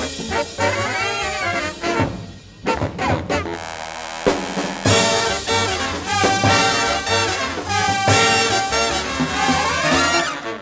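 Live big band jazz: the brass section of trumpets and trombones playing an up-tempo swing number. The band thins out about two seconds in, then comes back in full about five seconds in with long held brass notes.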